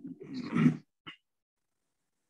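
A short, throaty vocal sound from a person, such as a throat clear or a grunt, lasting under a second, followed by a brief click about a second in.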